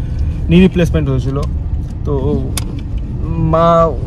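Voices in a car cabin, with a long drawn-out vowel near the end, over the steady low rumble of the Nissan Magnite.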